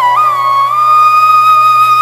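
Background music: a flute melody that has just climbed step by step and now holds one long high note.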